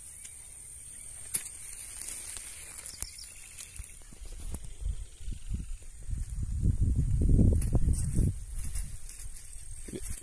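Outdoor rural ambience with a steady high-pitched hiss. About five seconds in, a low rumble builds, loudest at around seven to eight seconds, then dies down.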